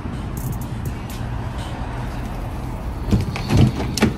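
Footsteps over a steady low rumble, then a few dull thumps between about three and four seconds in as the phone brushes against a padded jacket.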